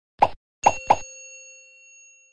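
End-screen sound effects: three short pops, then a bell-like ding that rings on and fades slowly.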